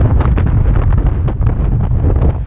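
Strong, gusty wind buffeting the camera's microphone: a loud, deep, uneven rumble with constant gusts. The wind is strong enough to shake everything, camera and tripod included.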